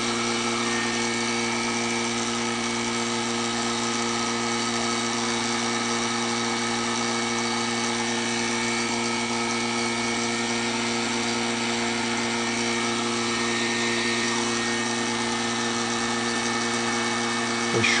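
Vacuum pump and heat gun running together: a steady electric-motor hum with an airy hiss, the pump drawing the heat-softened plastic sheet down over the mould on the vacuum-forming plate.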